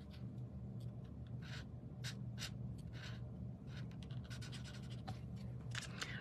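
Stampin' Blends alcohol marker stroking on cardstock as it colors small areas: faint, short scratchy strokes at irregular intervals, over a low steady hum.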